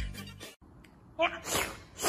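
Background music stops about half a second in; about a second later comes a short sneeze, a brief pitched 'ah' followed by a sharp noisy burst, with another short burst at the very end.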